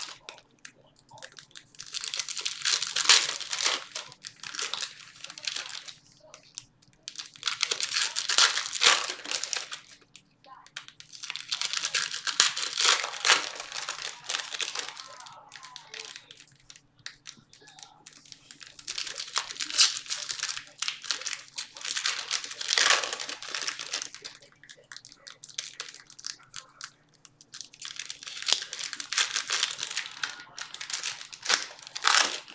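Foil trading-card pack wrappers crinkling and tearing as packs are opened and cards handled, in bouts of a few seconds separated by short pauses.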